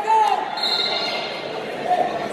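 Wrestling shoes squeaking on the mat as the wrestlers move and push on their feet, one short high squeak about half a second in, with voices calling out around them.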